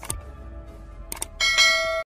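Sound effects of an animated subscribe button: a mouse click, then a quick double click about a second in, followed by a bright notification-bell chime that rings on.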